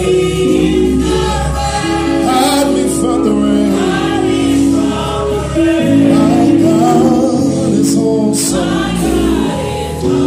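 A gospel praise team sings in chorus over keyboard accompaniment, the keyboard holding sustained chords beneath the voices.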